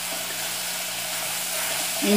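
Dried beef, onion, tomato and herbs sizzling in an aluminium pot as they sauté, a steady even hiss while the mixture is stirred.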